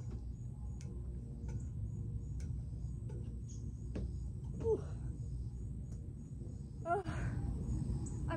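Steady low wind rumble on the microphone, with a few faint knocks of hands grabbing the metal monkey bars in the first half and a brief voice sound about halfway through and again near the end.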